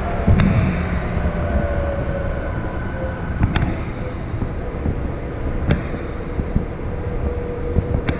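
Metro train running through a tunnel, heard from on board: a steady low rumble with a faint whine, and three sharp clicks spaced a few seconds apart.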